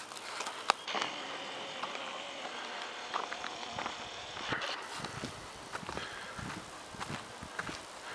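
A person's footsteps walking, a string of light, irregular taps and scuffs over a faint steady hiss.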